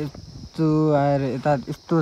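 A man's voice singing or chanting in long held notes, over a steady high-pitched drone of insects such as crickets.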